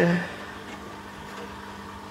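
A steady low hum with a faint hiss, the constant background noise of the room, with the tail of a spoken word at the very start.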